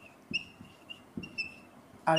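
Whiteboard marker squeaking against the board as it writes: a series of short, high squeaks, with a few faint taps of the marker.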